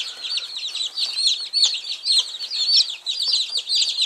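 A brooder full of about 80 two-day-old chicks peeping together: many high, short peeps overlapping without a break.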